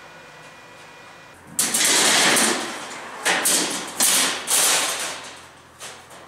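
A thin embossed steel sheet being laid into a steel door frame and shoved into place: a few loud metallic scraping and rattling bursts, each starting suddenly and fading, beginning about a second and a half in.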